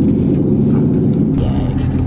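Car engine and road noise heard from inside the cabin while driving: a steady low hum.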